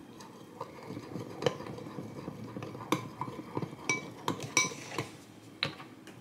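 A metal spoon stirs matcha powder and hot water in a cut-glass bowl, scraping and tapping against the glass. A run of light clinks rings out more sharply in the second half.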